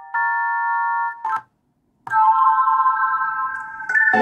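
Held synth chords with no drums, from a beat being worked on: one chord sounds for about a second and cuts off, a short stab follows, and after half a second of silence another chord is held.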